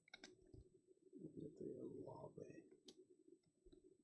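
Faint clicks and light taps of trading cards being handled and sorted by hand, with a soft, low voice-like murmur in the middle.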